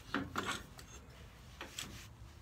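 Metal-on-metal scraping and rubbing as the lathe's tool rest and banjo are slid and repositioned along the bed through wood shavings. There are two short scrapes in the first half second and another just before the end.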